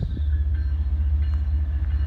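Steady low rumble of an approaching freight train's diesel locomotives, still out of sight down the line.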